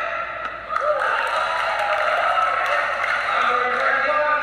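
An announcer's voice over a public-address system, drawn out in long held vowels, as when calling out players during team introductions.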